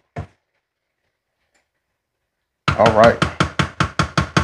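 Near silence, then from almost three seconds in a spatula knocks rapidly against a skillet as the stir-fry is tossed, about five knocks a second.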